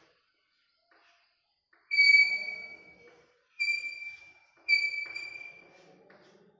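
Chalk squeaking on a blackboard while drawing: three sudden high-pitched squeals about a second long each, the first about two seconds in and the others close together near the end, with fainter scratching of the chalk under them.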